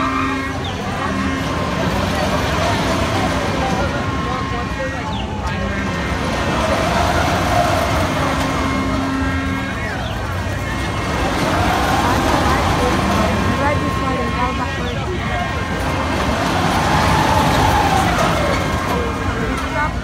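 Fairground loop swing ride running, with a mechanical whine that rises and falls in pitch about every five seconds as the car swings around the ring, over crowd chatter.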